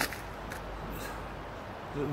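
Steady rushing noise of a river flowing past the bank, with a few faint clicks over it.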